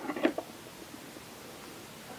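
A few soft clicks and rustles in the first half second from hands handling small resin model parts at a workbench, then only faint room hiss.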